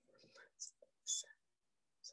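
Faint whispered speech, broken into short soft bits with a couple of hissing sounds.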